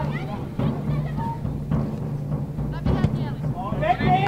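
Outdoor football match sound: a few dull low thuds and knocks over a steady low hum, with faint players' calls in the distance.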